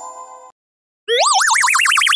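Added cartoon sound effects: a chime fading out in the first half second, then about a second in a loud boing-like warbling tone that rises in pitch as its wobble gets faster.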